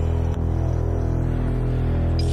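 Instrumental dark-pop beat music near its close: a steady, sustained low bass drone, with a single short click about a third of a second in.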